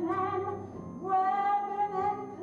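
A woman singing a musical-theatre song, holding one long note through the second half.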